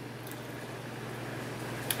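Quiet chewing of a soft cookie butter Oreo over a steady low room hum, with a faint click near the end.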